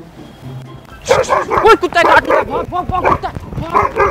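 A fake dog bark, loud rapid barking breaking out suddenly about a second in and running on without pause. It is the prank's scare bark, not a real dog.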